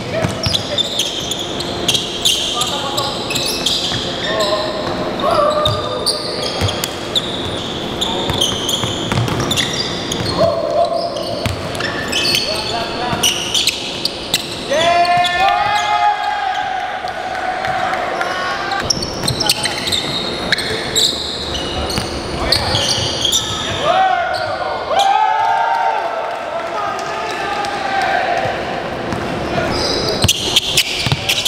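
A basketball being dribbled on a hardwood gym floor, with repeated sharp bounces ringing through a large hall, and players' voices calling out over the play. The voices are loudest about halfway through and again a few seconds before the end.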